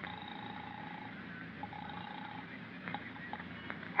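Telephone ringing heard down the line as a steady buzzing tone, twice: about a second, then a short pause and a shorter ring. A few faint clicks follow near the end as the call is picked up, over the hiss of an old recording.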